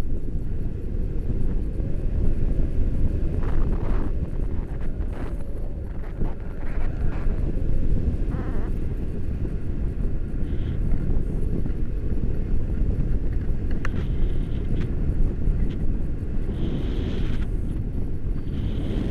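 Airflow buffeting a hand-held camera's microphone in tandem paraglider flight: a loud, steady, low rumble that wavers without letting up.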